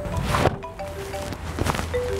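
Mobile phone ringing with a short melodic ringtone, the same phrase of clear notes repeating about every second and a half. There is a single thump just under half a second in.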